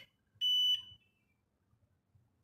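HF4000 Plus fingerprint scanner giving a single high beep, about half a second long, as the finger on its sensor is captured.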